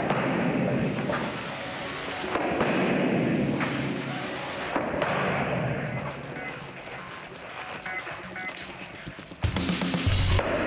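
Background music with several short thuds of strikes landing on taekwondo kick paddles.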